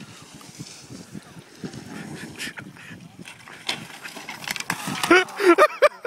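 Indistinct voices and scuffing outdoor noise, then from about five seconds in loud, repeated high-pitched laughter breaking out at a failed rail grind.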